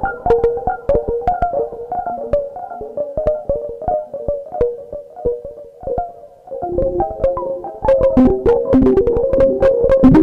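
Electronic music: a synthesizer keyboard plays a run of quick notes over sharp percussive ticks. It thins out and drops quieter about six seconds in, then builds back with denser percussion.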